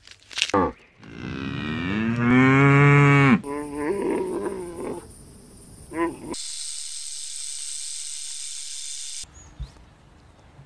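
Cow mooing: one long, loud call about a second in that drops in pitch as it ends, followed by shorter calls. A sharp snap comes just before it, and a steady hiss lasts about three seconds in the second half.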